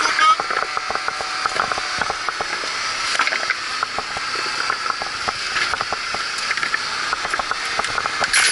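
A steady machine drone runs throughout, with frequent short clicks and knocks from hands working at a steel container close by.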